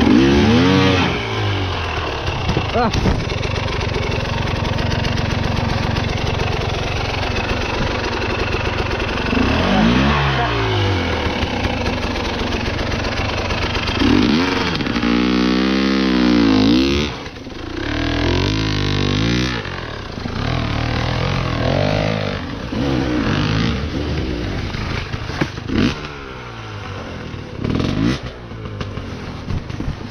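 Enduro motorcycle engine revved in repeated bursts, its pitch climbing and falling again and again, as the bike is wrestled up a steep slope. Several sharp knocks come in between the revs.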